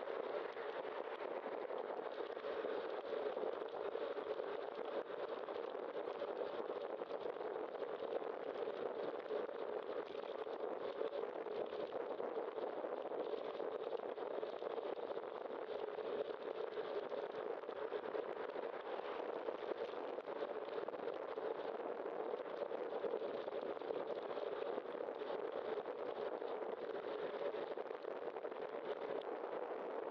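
Steady rush of wind and road noise on a bicycle-mounted camera while riding, with no breaks or sudden sounds.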